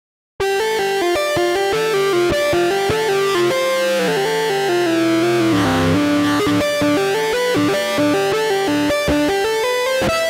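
Omnisphere 2.8 software synthesizer playing the 'Aggressive Clarinet Hybrid Lead' patch from the Lost Memoirs library: a clarinet-based lead line of quick successive notes, starting about half a second in. Around the middle the line wavers and slides down before the quick notes resume.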